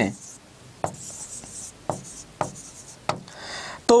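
A stylus writing on a touchscreen display: a few sharp taps as the pen tip meets the screen, spaced about a second apart, and a short scratchy stroke just after three seconds in.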